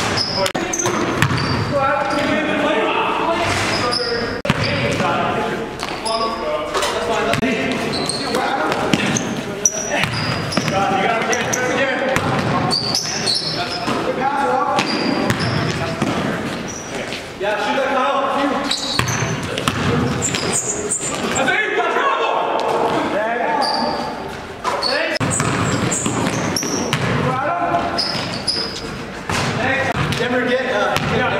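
Basketball game in an echoing gym: a ball bouncing on the court floor and sneakers squeaking in brief high chirps, over continuous indistinct voices of players and onlookers.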